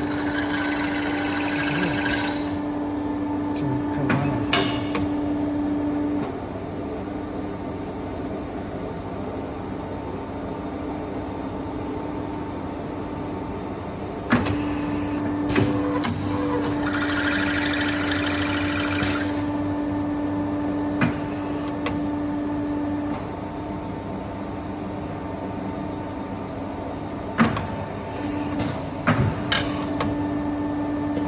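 CNC square tube bending machine working through a bend: a steady motor hum that stops about 6 s in and returns about 14 s in. It has two spells of higher-pitched whirring as the axes move, and scattered sharp clicks and clunks from the clamps and dies.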